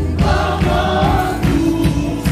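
Live gospel worship music: voices singing a melody over a band with a steady beat.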